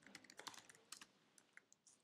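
Computer keyboard typing: a run of quick, faint keystrokes that thins out in the second half.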